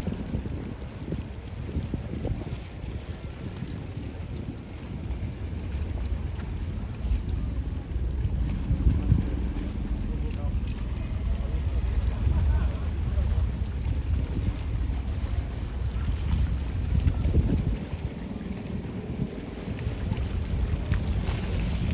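Wind buffeting the microphone aboard a moving boat: an uneven, gusting low rumble with the boat's running noise and water beneath it.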